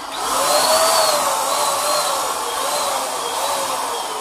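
BUILDSKILL Pro BPS2100 750 W HVLP electric paint sprayer running: a steady rushing hiss of its blower with a faint whine that wavers slightly in pitch. It gets louder just after the start.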